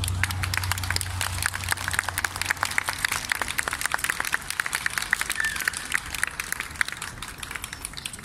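Audience applauding, a dense patter of claps that thins out and grows quieter toward the end, as the last of the music fades in the first second.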